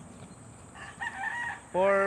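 A rooster crowing faintly: one crow of just under a second.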